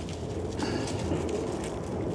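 Faint rustling of raspberry leaves and canes as a hand reaches into the bush, over a steady low rumble.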